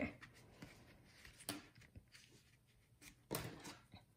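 Faint handling of a clear plastic ruler and card stock: soft paper rustling with two light taps, about a second and a half in and again near the end, as the ruler is laid on the paper.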